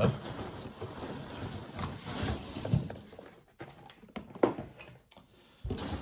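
Hands rummaging inside a cardboard box with cardboard dividers: rustling and scraping of cardboard, then a few sharp knocks in the second half.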